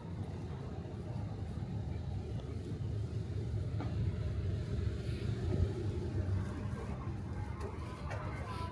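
Outdoor city street ambience: a low, steady rumble with a couple of faint clicks in the middle.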